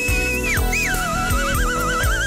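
Background music: a high lead melody holds a note, slides down, then wavers with a strong vibrato and climbs near the end, over a steady drum beat.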